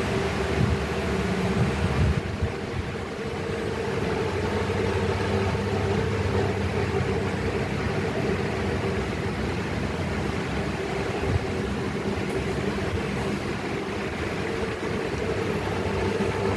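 Steady low machine hum with an even hiss, holding level throughout.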